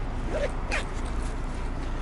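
Uniform jacket being handled at the chest: a few short fabric scrapes in the first second, the strongest about 0.7 s in, over a steady low hum.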